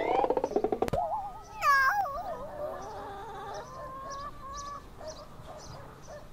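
Cartoon worm's squeaky, warbling vocal sounds: a fast fluttering trill that rises in pitch, a sharp click, a wobbly high squeal about two seconds in, then a quieter wavering tone that fades away.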